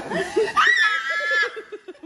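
Women laughing: rapid pulsed giggling, with a high-pitched squeal of laughter held for just under a second starting about half a second in.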